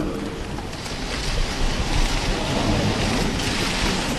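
A crowd applauding: dense, steady clapping that swells slightly after about a second.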